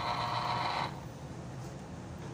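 Small electric citrus juicer running as an orange half is pressed onto its spinning plastic reamer, a steady motor whine. It stops suddenly about a second in.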